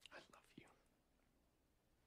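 A faint, brief whisper in the first moment, then near silence with only a low hiss.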